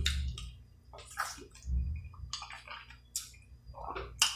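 Close-miked wet eating sounds of Dungeness crab meat being chewed: a string of short, moist mouth smacks and squelches.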